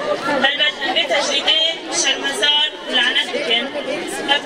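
Speech only: a voice talking without a break.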